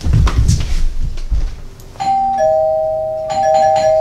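Thudding footsteps hurrying off across the floor, then about two seconds in a two-note doorbell chime: a higher note followed by a lower one, both ringing on steadily.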